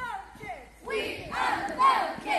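A group of children's voices chanting and shouting together, the pitch sliding up and down, with the loudest shout shortly before the end.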